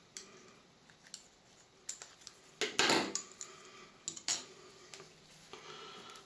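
Scissors snipping PTFE thread-seal tape free of its roll, a few short sharp cuts and clicks, the loudest about three seconds in, with light taps of the scissors and small metal parts being handled and set down.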